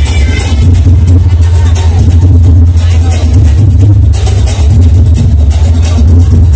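Loud DJ dance music through a large roadshow sound system, dominated by heavy booming bass with a steady beat and a voice on top.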